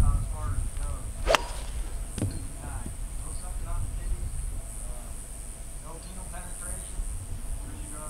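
A 7-iron strikes a golf ball off the fairway turf about a second and a half in: one sharp, crisp strike.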